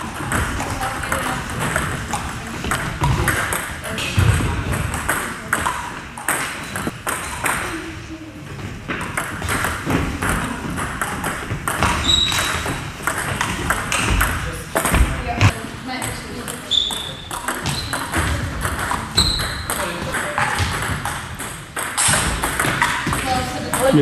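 Table tennis rally: the ball clicks sharply off bats and table again and again, with voices talking in the background.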